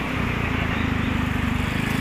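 Street traffic: a nearby motor-vehicle engine running with a steady low rumble.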